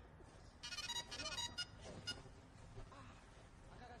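A mobile phone ringtone playing faintly, a few quick electronic notes repeating about a second in.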